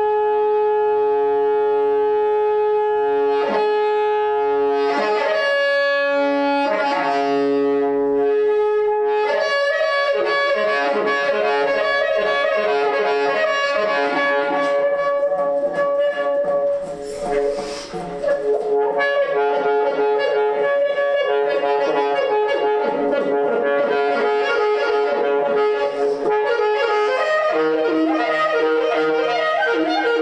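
Saxophone playing: a steady held tone with many overtones for about the first nine seconds, then a denser, wavering run of notes. Around seventeen seconds a brief breathy hiss breaks in before the playing resumes, settling on a new pitch near the end.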